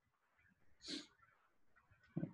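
Near silence: room tone, broken once about a second in by a short breathy sound like a sniff or quick breath.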